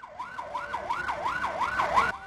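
Police vehicle siren in a fast yelp, its pitch sweeping up and down about three times a second.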